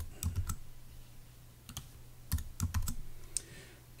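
Keystrokes on a computer keyboard, a few scattered clicks in two short flurries, one near the start and one around the middle, as text in a form field is corrected to capital letters.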